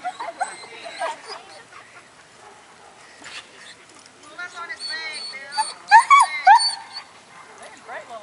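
A Weimaraner whining, a series of short high-pitched calls that rise and fall, loudest about six seconds in.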